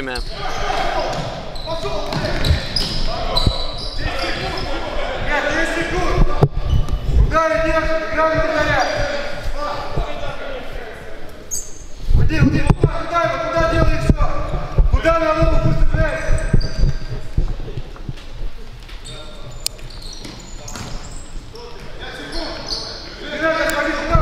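Futsal ball being kicked and bouncing on a wooden indoor court, with players shouting, loudest in the middle. Everything echoes in the large sports hall.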